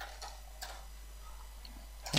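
Faint computer keyboard keystrokes, a few scattered clicks, as code is typed, over a low steady hum.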